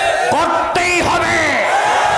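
A crowd chanting a shouted slogan in unison, many voices together, answering the preacher's call.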